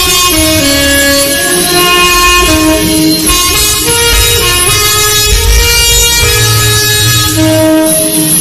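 Alto saxophone playing a slow melody in sustained notes, each held for roughly half a second to a second before stepping to the next pitch.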